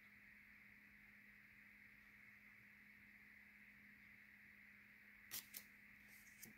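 Near silence: quiet room tone with a faint steady hum, broken by two short soft clicks close together near the end.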